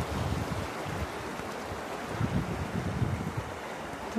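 Shallow river running over stones, with wind buffeting the microphone in low gusts near the start and again past the middle.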